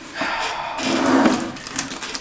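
Clear plastic wrapping crinkling and rustling as a helmet is handled and turned inside its bag.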